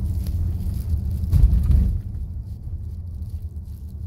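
Low, steady road and engine rumble inside the cabin of a Volkswagen Teramont SUV as it slows down. A louder low rumble swells for about half a second around a second and a half in.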